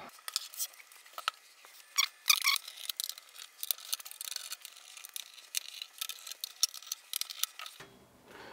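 Hands handling a stereo receiver's sheet-metal chassis while its bottom cover is unscrewed and lifted off: a run of small irregular clicks, taps and light metal rattles.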